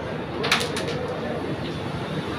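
A sharp click on the carrom board about half a second in, then a few quick lighter clicks, as the striker is handled on the board while it is set up for the break. Low voices murmur underneath.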